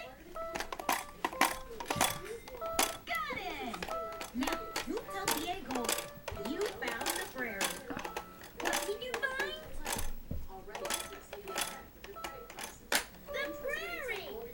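Electronic toy guitar played by a young child: short electronic notes and beeps, with many sharp clicks, and a young child's voice now and then.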